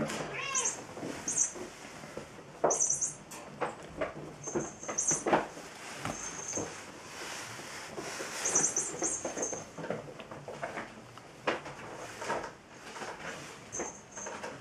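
Kittens meowing while they play, with scattered knocks and scuffling on the cat tree.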